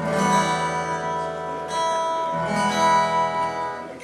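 Acoustic guitar strummed three times, each chord left ringing, as a freshly fitted G string is checked for tuning.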